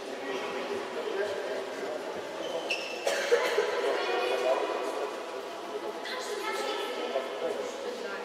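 Indistinct chatter of many voices at once, boys and adults, in a large sports hall, growing louder about three seconds in.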